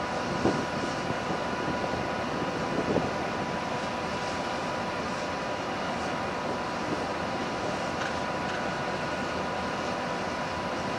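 Steady mechanical drone of a freight ferry's machinery heard on its open deck at sea, an even rushing noise with a faint hum of steady tones in it, and a couple of small knocks near the start.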